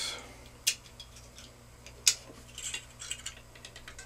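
Small metal-on-metal clicks and clinks of a hand-held Freechex II gas-check punch-and-forming die and aluminum strip being handled at an arbor press. There is a sharp click about a second in, another near the middle, then a quick run of small ticks.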